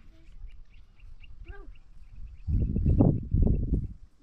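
An animal calling loudly in a rough, buzzy call of two or three pulses during the last second and a half, after a few faint short high chirps.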